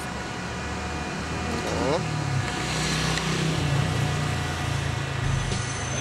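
Road traffic: a motor vehicle passing close by, its rumble and tyre hiss building to the loudest point about three seconds in, then easing off.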